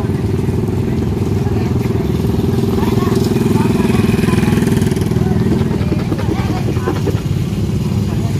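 Small motorcycle engine running steadily at low speed close by, a little louder about three to five seconds in as a scooter rides past.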